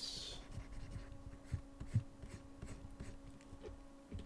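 Faint scratching and light ticking of hand work at a computer desk during digital sculpting, with a few soft low thumps, the loudest about two seconds in. A short hiss at the start and a steady low hum run underneath.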